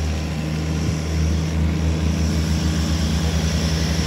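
Diesel engines of two Ghazi 480 tractors running hard under full load as they pull against each other, a steady low drone.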